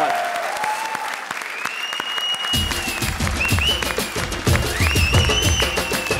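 Studio audience applause, with music with a steady beat coming in about two and a half seconds in.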